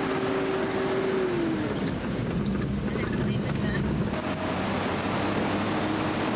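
A motor vehicle driving along a dirt road, its engine and road noise heard from inside. The engine note drops about a second and a half in, then holds steady.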